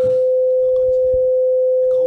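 A loud, steady electronic tone at one mid pitch, unbroken and unchanging, like a dial tone, with faint handling sounds of a stainless thermal carafe's lid being opened beneath it.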